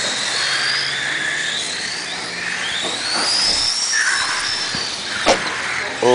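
Radio-controlled F1 race cars lapping the track, their motors whining high and gliding up and down in pitch as they speed up and slow down. One sharp knock comes a little after five seconds in.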